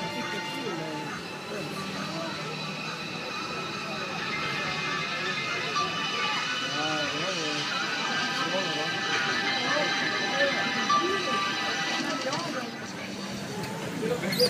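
A small CRT television playing a programme of voices and music.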